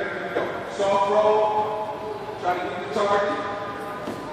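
Indistinct voices talking in a large, hard-walled gymnasium, in two short stretches of speech that the words cannot be made out from.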